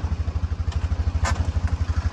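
An engine idling nearby with a deep, even pulse.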